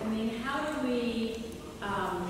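Only speech: a woman talking into a microphone.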